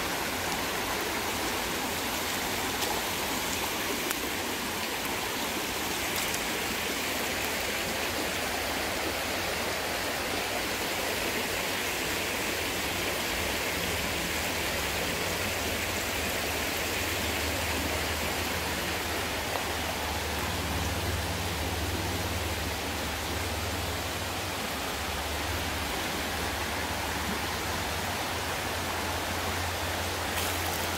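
Shallow rocky creek running over stones in a steady rush of water. A low rumble joins in underneath a little past halfway.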